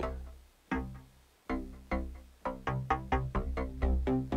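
Plucky wavetable synth notes from the Korg Electribe Wave iPad app, with the oscillator's wavetable position being moved to change the tone. Two single decaying notes come first, then from about two and a half seconds in a quick run of short notes.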